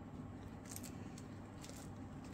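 Faint rustling of a paper towel folded over by hand onto damp crystals, with a few light crinkles about a second in and near the end.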